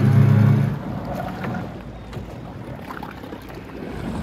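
Motorboat engine running with a steady low hum that cuts off abruptly under a second in, leaving only a quieter background with a few faint knocks.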